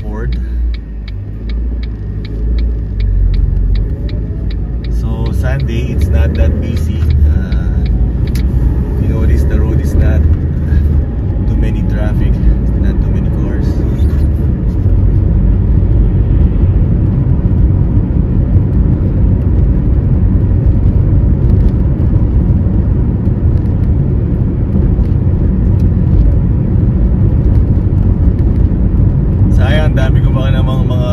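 Car engine and tyre rumble heard from inside the cabin as the car pulls away from a stop. The rumble grows louder over the first few seconds as it gathers speed, then holds steady while cruising along the street.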